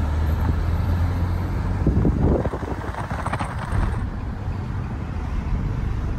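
Steady road and engine noise inside a moving car: a low rumble under tyre hiss, a little rougher about two seconds in.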